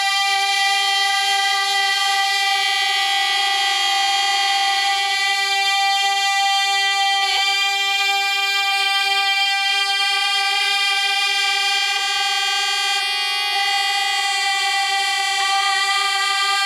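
Women's voices singing a cappella, holding one long steady wordless note together like a drone, with a slight wavering in one voice near the start.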